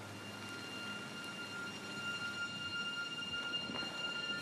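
A steady high-pitched ringing tone over a soft hiss, growing a little louder about halfway through.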